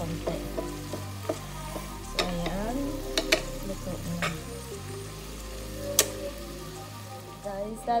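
Wooden spatula stirring and scraping a sautéed tomato-and-onion mixture in a nonstick frying pan over a steady sizzle, with a few sharp clicks of the spatula against the pan.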